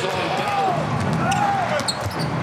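A basketball being dribbled on a hardwood court, with voices calling out in the arena.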